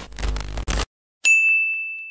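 Logo-intro sound effects: a noisy whoosh with a heavy low end that cuts off just under a second in, then a single bright ding about a second in that rings on as one clear high tone and fades.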